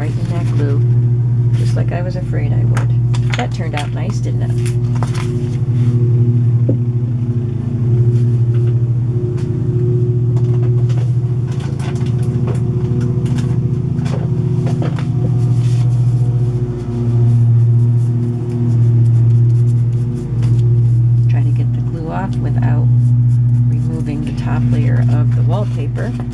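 Paper being handled: folded journal pages and a wallpaper border rustling, with short light clicks and taps, over a loud steady low hum that swells and fades every second or two.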